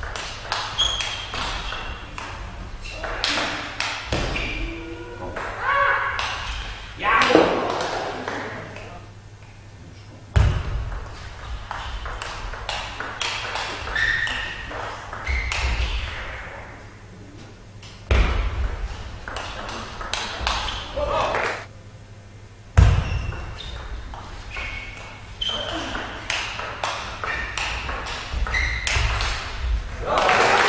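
Table tennis rallies: the celluloid ball clicking sharply off the bats and the table in quick runs of hits, with heavy thumps of feet on the floor. Between points there are short shouts and voices.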